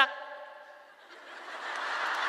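A large audience laughing. The laughter swells from about a second in and carries on, sounding in a reverberant church hall after the echo of the last spoken word dies away.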